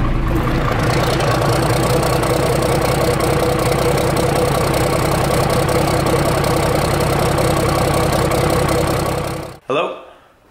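Cummins diesel engine idling steadily, its exhaust coming out of a stack through the hood and heard from inside the cab; it cuts off suddenly near the end.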